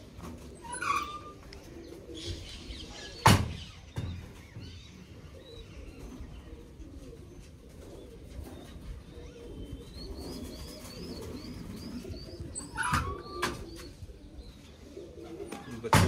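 Domestic pigeons cooing, with a sharp knock about three seconds in and a quick run of short, high chirps from another bird a little after the middle.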